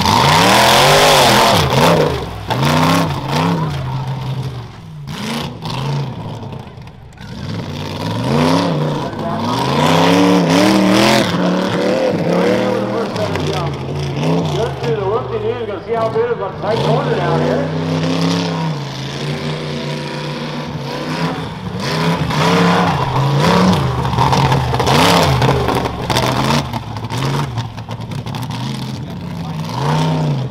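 Off-road buggy engine revving hard and backing off again and again as it runs the dirt course, its pitch rising and falling every second or two. The loudest stretch comes right at the start.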